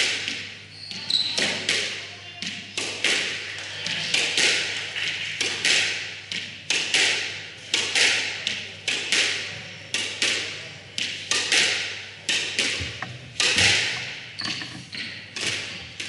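Squash rally: the ball cracks off rackets and the walls, a hit every second or so, each strike ringing in the enclosed court.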